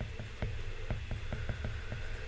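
A stylus tip tapping and clicking on a tablet's glass screen while handwriting: a series of light, uneven ticks, about eight in two seconds, over a faint low hum.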